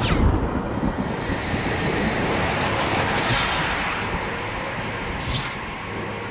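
Sound effects for an animated logo intro: a steady, heavy rumble with whooshes sweeping through at the start, in the middle and again near the end.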